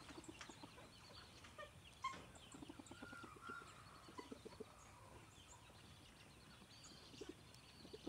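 Near silence with faint, soft clucks and pecking sounds from roosters, a single sharp tick about two seconds in, and a brief faint gliding chirp a second later.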